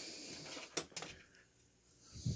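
Faint handling sounds from a hand-held screwdriver and a metal hose clamp being picked up: low rustle, then two small clicks about a second in, then near silence.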